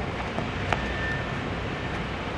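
Steady factory background rumble and hiss. About three-quarters of a second in comes a sharp click, followed at once by a steady high-pitched tone lasting about a second.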